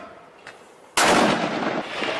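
A mortar firing: a sudden loud blast about a second in, followed by a long noisy tail.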